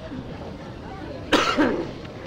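A single short cough about one and a half seconds in, over quiet background noise.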